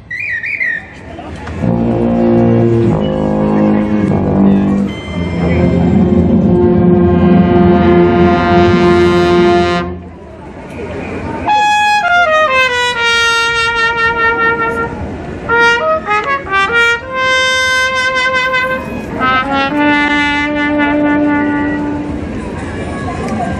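Brass band playing: full, sustained brass chords for several seconds, cut off together about ten seconds in, then a solo trumpet line with a falling slide and separate held notes.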